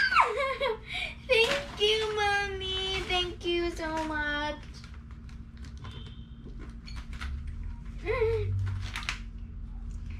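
A young girl squeals with delight, then holds a long, sung-out note that steps down in pitch for about three seconds. After that come quieter clicks and crinkles of a clear plastic biscuit tray being handled, with one short vocal sound about eight seconds in.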